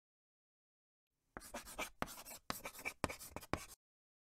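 Chalk writing on a blackboard: a run of scratchy strokes, about two a second, starting after a second of silence and stopping shortly before the end.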